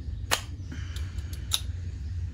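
Fox X2 rear shock's air sleeve being pulled off over its O-rings, giving sharp metallic clicks: one about a third of a second in, a few small ticks, then a louder click about one and a half seconds in.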